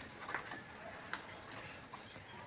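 Faint bird calls over a quiet background, with two light clicks in the first second or so.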